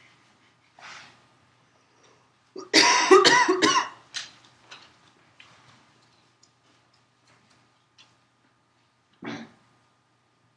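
A person coughing: a loud run of several coughs about three seconds in, a few weaker ones after it, and a single cough near the end.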